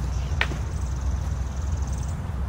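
Steady low outdoor rumble, like wind on the microphone or distant traffic, with a single brief sharp click about half a second in.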